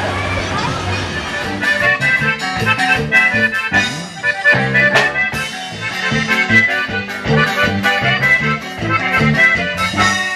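Live band on an outdoor stage playing upbeat Latin dance music with guitars over a steady beat. The first second or so is street crowd noise before the music comes in.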